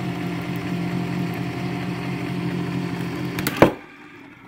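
Electric can opener motor running steadily as it turns a can held sideways. About three and a half seconds in there is a thump as the cut-open can drops onto the counter, and the motor stops.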